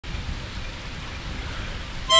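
Steady outdoor background hiss with an uneven low rumble, and a few small bumps in the first half second.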